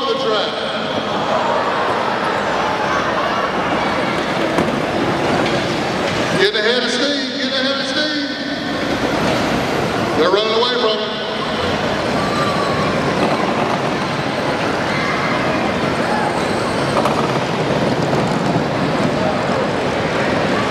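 Crowd noise and indistinct voices in a large indoor arena: a steady, echoing wash of sound, with louder bursts of voice about seven and eleven seconds in.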